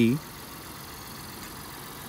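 Steady, low background noise with no distinct events, following the tail of a spoken word at the very start.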